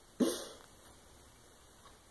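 A woman's single short laugh, one falling 'ha' with a breathy edge, about a quarter of a second in.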